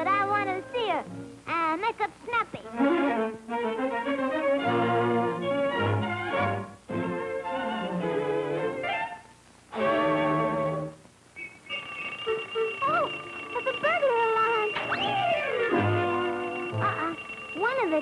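1940s animated-cartoon soundtrack: a lively orchestral score with many sliding pitches and wordless vocal sounds, and a long high note held through the second half.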